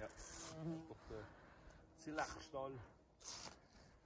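Faint buzzing of a flying insect, with a few soft words of talk in between.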